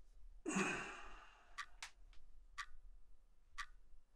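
A man's long sigh about half a second in, followed by a clock ticking about once a second.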